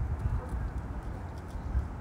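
A pause between spoken phrases, filled by low, irregular rumbling thumps.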